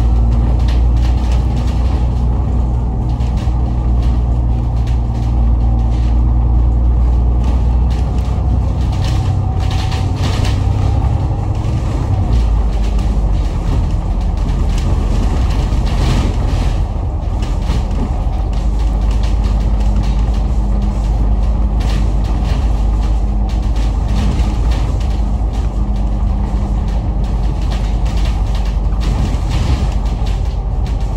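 Inside a Citybus Alexander Dennis Enviro500 MMC double-decker bus on the move: a steady low engine and drivetrain drone with road noise and scattered interior rattles. The engine note changes about twelve seconds in.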